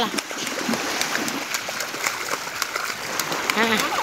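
Shallow seawater splashing and sloshing around a person's legs as he wades in, with small waves washing in the shallows. A voice speaks briefly near the end.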